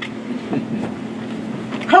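Room tone with a steady low hum and faint murmuring voices; a woman starts speaking at the very end.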